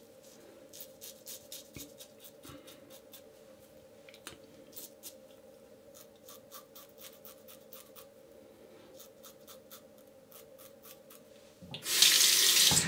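Faint, short scrapes of a Yates Ti 'Merica titanium safety razor cutting stubble on the upper lip, in quick strokes with pauses between them. Near the end a tap is turned on and water runs into the sink.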